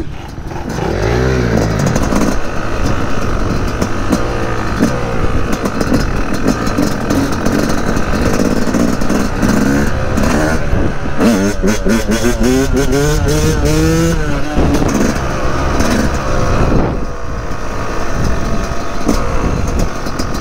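Dirt bike engine running while riding, its pitch rising and falling with throttle and gear changes, with clear revving runs about a second in and again about eleven to fourteen seconds in.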